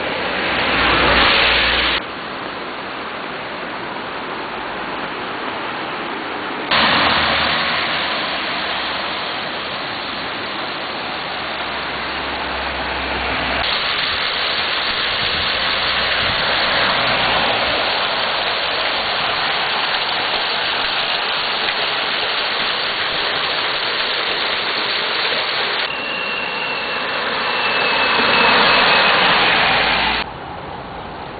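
Steady rushing water noise from the muddy river in flood and the rain-soaked surroundings, chopped by sharp cuts between clips. There are louder swells about a second in and near the end, with a faint falling whine in the last few seconds.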